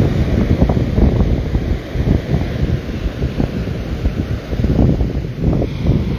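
Wind buffeting a phone's microphone in loud, uneven gusts, over the wash of surf breaking on the beach.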